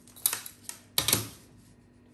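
A long plastic ruler being picked up and laid down on a sheet of pattern paper: a few sharp clacks, the loudest about a second in.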